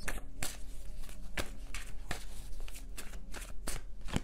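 A tarot deck being shuffled by hand: a run of quick, irregular card snaps, about three a second.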